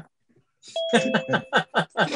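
A two-note descending chime, ding-dong like a doorbell, starting about three-quarters of a second in and ringing for under a second, heard under a man's voice.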